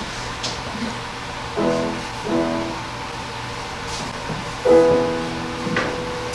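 Keyboard chords played as underscore: two short chords about a second and a half and two seconds in, then a longer held chord near five seconds that fades away.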